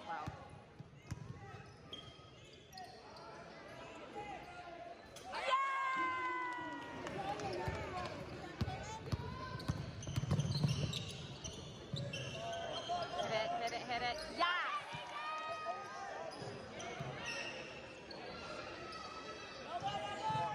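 A basketball bouncing on a hardwood gym floor as players dribble up the court, with voices of players and spectators echoing in the gym.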